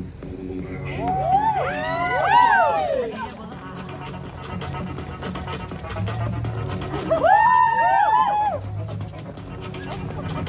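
Upbeat dance-fitness music playing for a Zumba class, with a steady beat and bass under swooping melodic phrases that come in twice, about a second in and again about seven seconds in.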